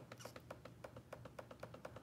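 Faint, rapid, evenly spaced clicking from a computer's input as pictures are paged through, about nine clicks a second.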